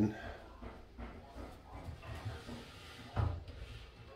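A glass shower door being closed: one short thump about three seconds in, over faint low room noise.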